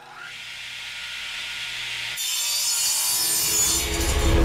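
Sound effect of a saw cutting through wood: a continuous noise that grows steadily louder and turns brighter about two seconds in.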